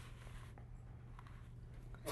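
Faint rustling of paper pages handled at a lectern, with a few small clicks, over a steady low hum.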